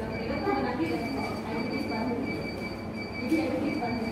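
Indistinct background chatter of people, with a steady high-pitched whine that drops out briefly now and then.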